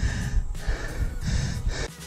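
A man panting hard, about three heavy breaths in and out, out of breath from pedalling a unicycle up a trail climb.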